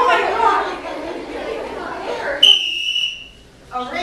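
Students talking in a scene, then about two and a half seconds in a single high, steady whistle blast of under a second, the signal for the performers to freeze.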